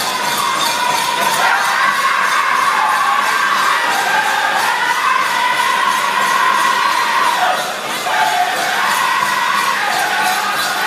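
Powwow drum group singing over a steady, even drumbeat, the high voices stepping lower about three-quarters of the way through, with bells on the dancers' regalia jingling throughout.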